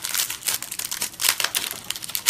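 Crinkling of a small plastic bag being worked open by hand: a dense run of quick, irregular crackles.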